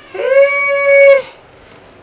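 A woman's long, drawn-out exclamation held on one steady high pitch for about a second, then cut off.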